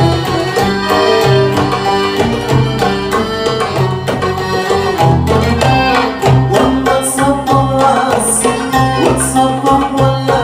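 Live Middle Eastern ensemble of oud, violin, accordion, darbuka and double bass playing a dance song, the darbuka keeping a steady rhythm under the melody.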